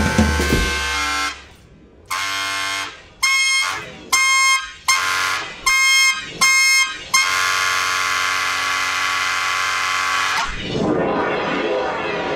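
Experimental improvised music for clarinet and electronics. After a brief lull come about six short, buzzing, horn-like tones that start and stop abruptly. A long held tone follows and cuts off suddenly, giving way to a rougher, noisier texture near the end.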